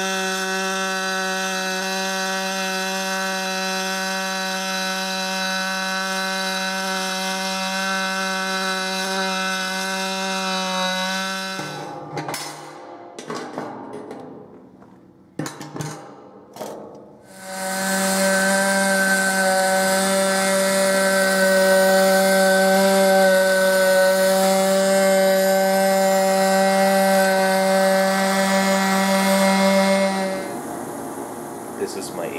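Electric arc welding on aluminum: the arc gives a steady, high electrical buzz with a crackling hiss on top. It stops about 12 seconds in, sputters briefly, and strikes again near 18 seconds, running louder to the end.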